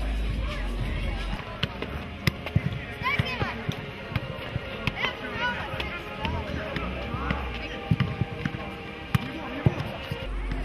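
A football being kicked back and forth in the air: a series of sharp, irregular thuds, about eight in all, over a background of voices and music.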